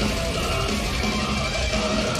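Metal band playing live in an arena: distorted electric guitars, bass guitar and drums in a fast, steady heavy metal riff.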